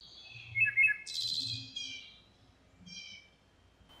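Songbird calls: a few quick chirps, then a longer trill about a second in, and a short call near the three-second mark.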